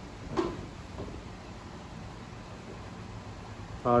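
Steady faint hiss of a quiet small room, with one brief short sound about half a second in; a voice starts right at the end.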